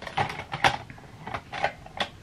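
Makeup brushes and small plastic makeup products clicking and clattering as they are picked up and sorted through by hand: a handful of short, irregular knocks.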